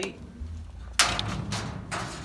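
A tape measure knocking against the stainless steel cabinet of a food cart: one sharp knock about a second in and a lighter tap near the end, over a low rumble of handling.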